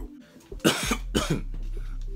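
A man coughing twice, about half a second apart, a little after the start. His throat is irritated.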